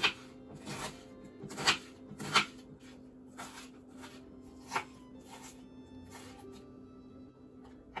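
Chef's knife chopping onion on a wooden cutting board: uneven strikes roughly once a second, stopping about six and a half seconds in.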